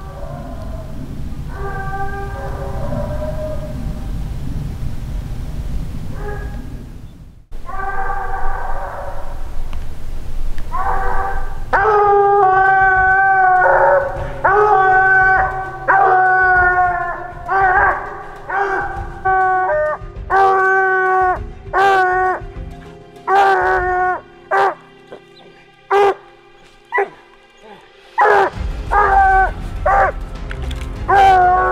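A coonhound bawling faintly and far off at first. After a sudden cut about seven seconds in, it barks loud and close at the tree, a steady string of barks about one a second: the hound has treed.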